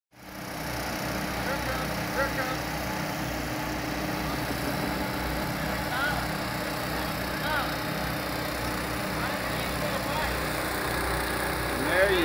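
Portable gasoline-engine water pumps running steadily at a constant pitch, pumping water out of a sunken shrimp boat's hull, with faint voices in the background.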